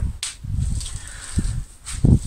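A single sharp click just after the start, then low rustling and shuffling of a person moving close to the microphone, with a faint steady high whine underneath and another click near the end.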